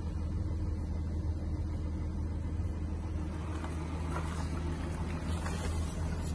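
Porsche Macan S Diesel's 3.0-litre V6 turbodiesel idling steadily, heard from inside the cabin as an even low hum, with a few faint clicks.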